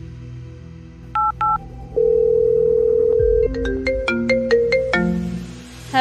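A mobile phone call being placed: two short keypad beeps about a second in, a steady tone for about a second and a half, then a quick run of ringtone notes. Soft background music plays underneath.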